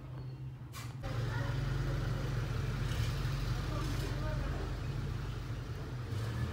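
A low steady hum with faint, indistinct voices over it; a short click comes just before a second in, and the hum grows louder at about a second in.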